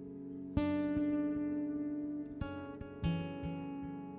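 Acoustic guitar opening a song with three strummed chords, each left to ring: a strong one about half a second in, then two more near the end.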